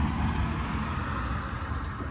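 Steady low rumble of road traffic going by, easing slightly toward the end.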